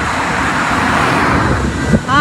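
A road vehicle passing close by, its noise swelling to a peak about a second in and then fading.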